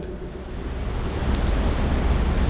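Steady rushing noise with a strong low rumble, growing slightly louder, with two faint ticks near the middle.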